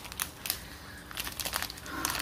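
Thin plastic packaging crinkling and crackling in the hands as a wrapped clear plastic tray is handled and opened, in irregular crackles with a few sharper ones.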